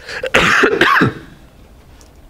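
A person clearing their throat once, a short rough burst lasting under a second.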